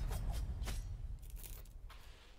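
Cinematic sound design from a music video's intro: a deep rumble that slowly fades, crossed by several short, sharp crackling snaps.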